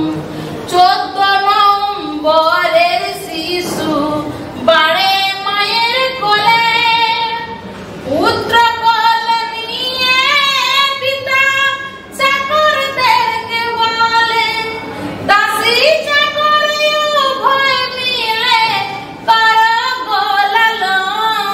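A woman singing unaccompanied in Bengali, a Patua scroll song (pater gaan) sung to narrate a painted scroll. Her voice sings phrases a few seconds long with brief breaks, and the held notes slide up and down in pitch.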